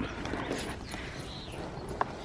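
Footsteps walking on a gravelly dirt path, soft and even.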